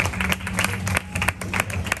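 Audience clapping: a quick, irregular patter of many separate hand claps over a low murmur.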